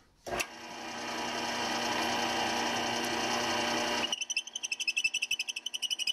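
Drill press running, its motor coming up to a steady hum, then about four seconds in a fast, rhythmic rasping as the bit cuts into the end of a wooden stick.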